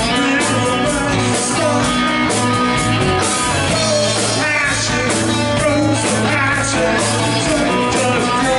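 Live rock band playing loud: electric guitar, electric bass and drum kit, with a steady beat.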